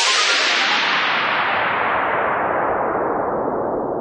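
A synthesized white-noise sweep in a hardgroove techno track, with no beat: a dense hiss that grows steadily darker and slightly quieter as its high end is filtered away.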